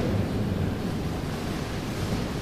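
Steady, even hiss of background room noise with a faint low hum and no speech.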